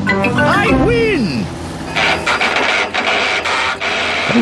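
Cartoon boat motor spluttering to a stop as it runs out of petrol. A falling whine comes in over the end of the music near the start, then a spluttering hiss with irregular pops.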